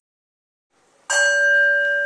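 After about a second of silence, a bell is struck once and rings on with a clear, slowly fading tone of several pitches. It is the cue to begin a movement practice.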